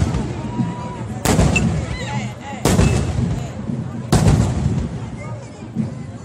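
Fireworks going off: three loud bangs about a second and a half apart, each followed by a brief rolling echo, over the murmur of a crowd.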